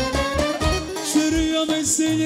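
Live Balkan wedding band music with a steady drum beat under a held melody line, one long note sustained through the second half.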